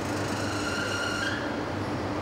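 Steady hum of car-assembly-line machinery, with a brief high squeal about half a second in that lasts about a second.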